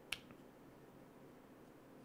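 Near silence with one sharp click just after the start and a fainter tick soon after, as the pinion and bearings are fitted into an RC crawler axle housing by hand.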